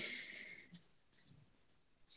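Near silence, after a brief faint noise in the first half-second or so.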